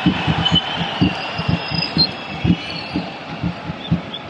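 Football stadium crowd with a bass drum being beaten in the stands, several uneven thumps a second over a steady wash of crowd noise.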